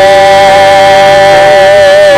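A man singing a gospel chorus into a microphone, holding one long note with a slight waver near the end.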